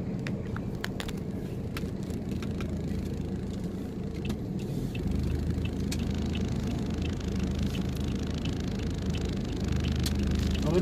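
Steady low engine and road rumble heard from inside a vehicle moving through city traffic, with scattered light clicks and rattles. The rumble grows a little stronger about halfway through.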